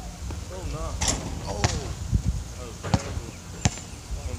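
Basketball bouncing and striking on an outdoor court after a jump shot: about five sharp thuds, half a second to a second apart, starting about a second in.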